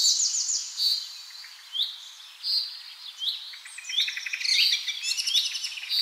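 Songbirds chirping: many short, high chirps and quick trills, one after another throughout.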